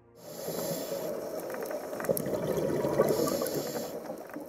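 Water bubbling and gurgling, starting suddenly just after the start, with a dense crackle of small clicks and a hiss.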